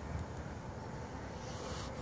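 Wind noise on the microphone, with the faint, steady hum of a radio-controlled model airplane flying overhead.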